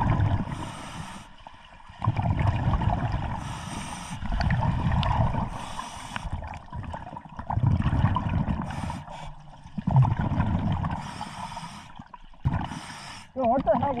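Scuba regulator breathing underwater: a short hiss on each inhalation, then a longer, louder burst of bubbling exhaust, repeating about every two to three seconds.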